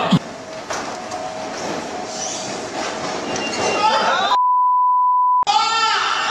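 A censor bleep: one steady, pure high beep lasting about a second, a little past four seconds in, with all other sound cut out while it plays. Around it are noisy crowd and room sound and voices.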